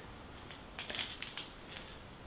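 Metal banana plugs on speaker cables clicking and rattling against each other as they are handled: a cluster of small, light clicks through the second half.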